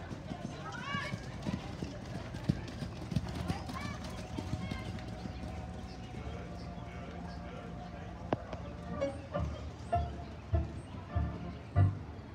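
Hoofbeats of a horse trotting on a dirt arena: a regular beat of about two strikes a second that comes in and grows louder in the last few seconds as the horse passes close. Background music and voices are also heard.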